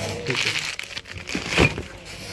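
Clear plastic bag crinkling as a car spare part inside it is handled, with a louder knock about one and a half seconds in.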